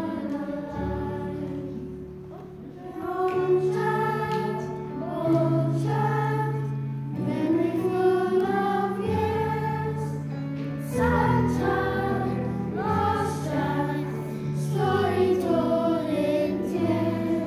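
Children's choir singing a song in phrases over instrumental backing with held low notes.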